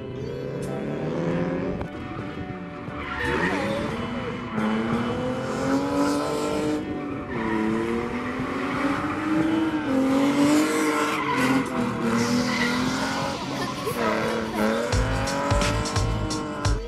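Drift car's engine revving up and down as it slides sideways through a corner, with tyres squealing. A low music beat comes in near the end.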